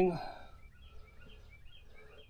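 The end of a man's word, then faint, short bird chirps repeating over quiet outdoor background.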